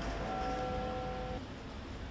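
Bells chiming, their steady ringing tones over a low street rumble, cutting off abruptly about one and a half seconds in.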